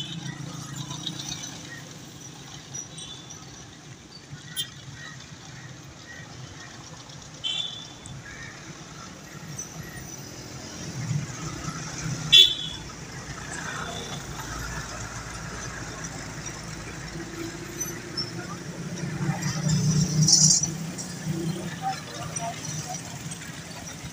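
Road traffic: vehicle engines running with a short horn toot. A sharp click about halfway through is the loudest sound, and a vehicle passes close near the end, its engine swelling louder.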